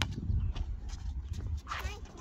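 Wind rumbling on the microphone, with one sharp knock right at the start and a child's short call near the end.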